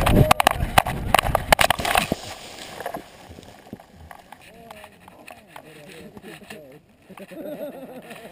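Rapid knocks and rubbing from a camera strapped to a cheetah's back as the cheetah moves, dying down after about two seconds. Faint voices of people talking some way off follow.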